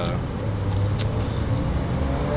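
Steady low rumble of nearby road traffic, with one brief sharp click about a second in.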